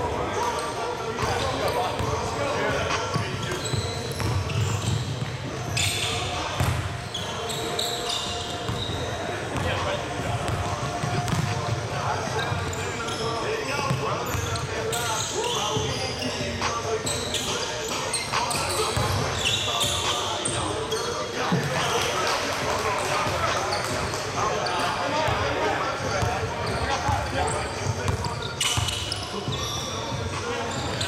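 Basketball game on a hardwood gym floor: the ball bouncing as it is dribbled, short high sneaker squeaks now and then, and indistinct players' shouts, all echoing in the hall.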